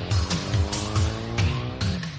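Short instrumental interlude music between segments of a radio talk show, with a steady bass-and-drum beat under held chords.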